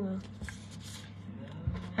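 Soft rustling of a small paper price tag and fingers handling a gold ring close to the microphone, with a couple of light taps, over a faint steady low hum.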